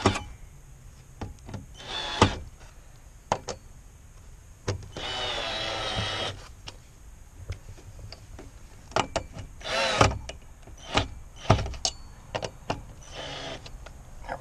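Cordless drill driving big wood screws through a metal post retainer into a wooden fence rail: the motor whirs under load for about a second and a half near the middle, with shorter runs later. Sharp clicks and knocks of the tool and bracket being handled come in between.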